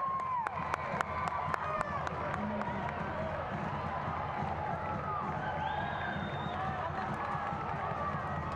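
Stadium crowd noise after a goal: a steady cheering din with scattered shouts, and clapping heard most clearly in the first two seconds.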